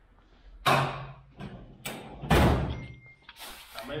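A desk drawer being rummaged and pushed shut: several sharp knocks and thuds, the loudest and deepest a little past two seconds in.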